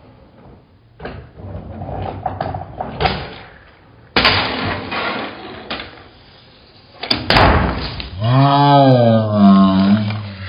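Hangnail handboard being knocked, rolled and slid over a wooden table and a metal pipe rail: irregular knocks and scraping slides, with a sharp clatter a little after four seconds and the loudest one about seven seconds in. Near the end a drawn-out wordless vocal sound rises and falls in pitch.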